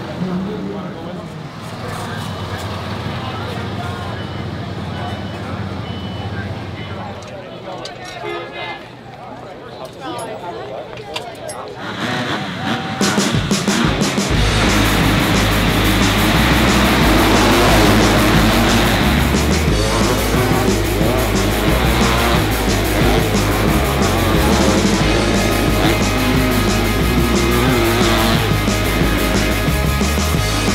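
Motocross bike engines and loud trackside background for the first twelve seconds or so. Then loud rock music with a heavy beat comes in and dominates, over the engines of the field.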